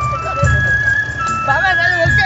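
Traditional Javanese procession music: a wind melody of long held notes that step from pitch to pitch, over low drum beats. A voice calls or sings over it in the second half.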